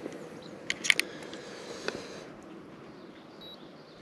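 A few light clicks, a cluster about a second in and one faint click near two seconds, over a faint background hiss.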